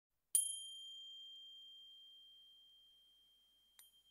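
A high-pitched bell chime struck once, its clear tone ringing on and slowly fading away. A second, much softer ding comes near the end.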